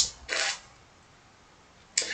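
Near silence broken by a short soft noise about a third of a second in and a sharp click just before the end.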